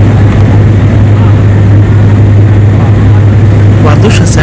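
Steady engine and airflow noise of an aircraft in flight, heard from inside the cabin, with a strong low hum under a loud even rush.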